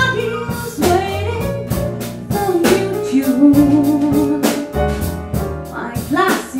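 A female jazz vocalist sings over piano, double bass and drum kit, with regular cymbal strokes, and holds one long note with vibrato about three seconds in.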